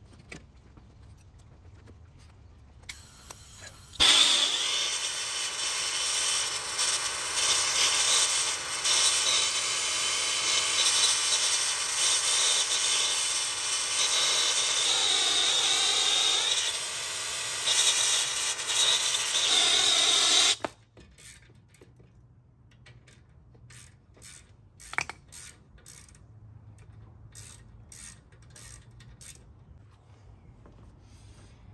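A hand-held propane torch fed by hose from a tank, its flame hissing loudly and steadily as it heats the tight fitting posts on an old AC condenser to free them. It starts abruptly about four seconds in and is shut off suddenly after about sixteen seconds. Faint clicks and a single sharp tap follow.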